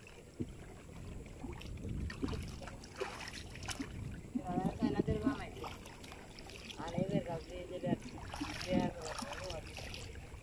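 Water sloshing and lapping around a person wading chest-deep and groping through the water by hand, with a few small knocks. Voices talk in three short stretches through the second half.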